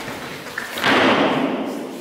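An aikido partner thrown down onto the training mats: a thud about a second in that dies away over about half a second.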